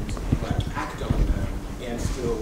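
Speech from an audience member asking a question from the back of a lecture hall, sounding distant and off the microphone, with scattered short knocks.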